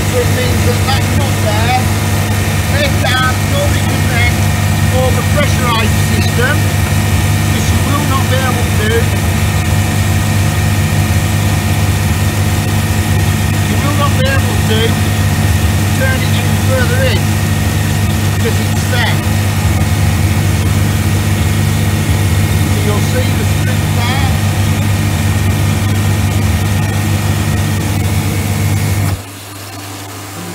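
Nova 2 hot-water pressure washer's electric motor and plunger pump running steadily with a loud, even hum. The sound stops suddenly near the end.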